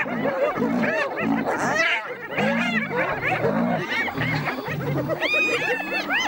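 Spotted hyenas giggling, many high yelping calls that rise and fall and overlap, with lions growling deep and low underneath.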